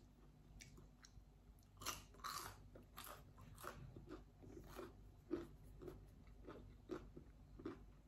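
A person chewing a bite of breaded mozzarella cheese stick, crisp outside and soft inside: faint, repeated crunches of the crumb crust, about two a second.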